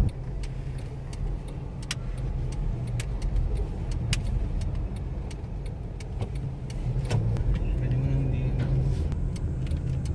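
Car cabin noise while driving: a steady low engine and road rumble, with scattered light clicks.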